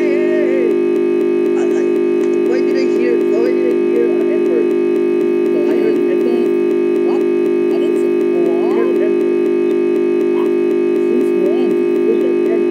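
Loud, steady buzzing drone from the crashed Windows 10 virtual machine's sound output: a tiny scrap of the audio that was playing is stuck repeating over and over, the looping sound of a blue-screen crash. Faint wavering voice-like sounds come through underneath.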